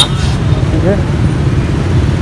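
Loud, steady low rumble of outdoor street noise, with one short spoken word about a second in.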